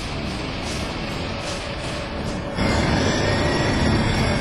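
Steady noisy road sound inside a moving car. About two and a half seconds in, it cuts to a louder, deeper rumble of a jet airliner descending with its landing gear down. Music plays underneath throughout.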